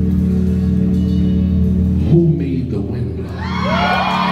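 Sustained chords on a church keyboard or organ, held steadily under the sermon's pause. A pitched voice comes in near the end, rising and falling in sung tones.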